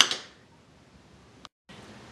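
One sharp, loud bang right at the start that dies away within a fraction of a second, then quiet room tone. The sound drops out completely for a moment about one and a half seconds in.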